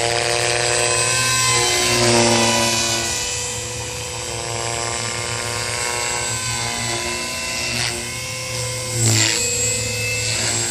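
JR Forza 450 radio-controlled helicopter in flight: a steady high whine from its electric motor and rotor blades. The pitch dips and recovers about two seconds in, and again about nine seconds in with a brief loud swell.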